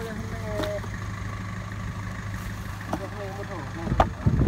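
Small cargo truck's engine idling steadily, a low even hum.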